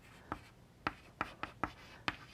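Chalk writing on a blackboard: about five short, sharp taps and scrapes of the chalk as letters are written.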